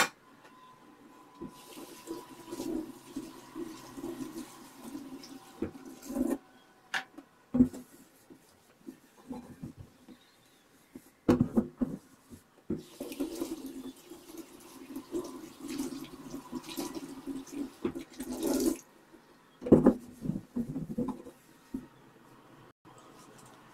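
A damp cloth wiping and scrubbing a wet stainless-steel sink and drainboard in two long stretches of rubbing, with a few sharp knocks on the metal in between.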